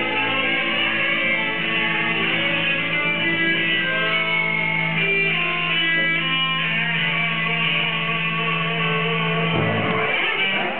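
Live rock band playing an instrumental passage led by electric guitars. A held low note stops shortly before the end.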